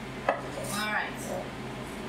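Peppercorns being cracked over a frying pan of sauce: one sharp crack about a quarter of a second in, over the steady low hum of the range hood fan.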